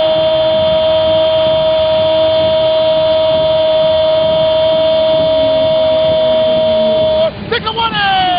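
Sports commentator's long drawn-out goal cry, "gooool", held on one loud, steady note for about seven seconds, then breaking into short shouted syllables near the end.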